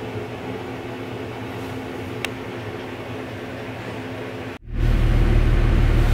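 A steady low electrical hum of room tone with one faint click about two seconds in. Near the end it cuts suddenly to the much louder low rumble of a car's interior.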